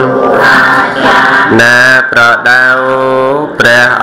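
A Buddhist monk chanting in a slow, melodic male voice, holding each syllable in long, steady notes with short breaks between them.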